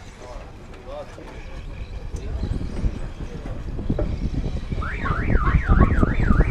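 A warbling electronic siren tone, sweeping up and down about three times a second, starts near the end over a low rumbling noise that grows louder.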